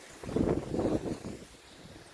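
Wind buffeting the microphone of a camera moving down a ski slope. It swells for about a second and then eases off.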